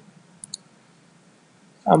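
Two quick, light computer mouse clicks in close succession about half a second in, like a double-click, over quiet room tone.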